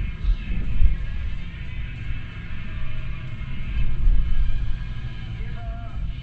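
Low road rumble of a car heard from inside the cabin, swelling about a second in and again around four seconds, with music from the car radio underneath.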